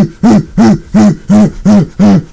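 A voice repeating one short hooting syllable about three times a second, each note rising then falling in pitch, like a looped laugh.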